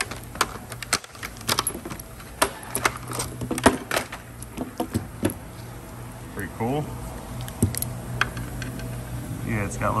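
Irregular sharp clicks and crackles of a plastic blister pack being opened, then the steel links and cutting wheels of a GearWrench chain-style exhaust pipe cutter clinking as they are handled.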